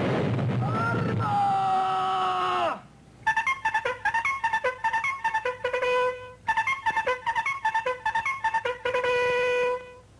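A cartoon explosion: a long noisy blast that dies away after nearly three seconds, with a tone sliding downward over its tail. Then a trumpet-like brass tune of quick repeated notes plays, with a couple of long held notes.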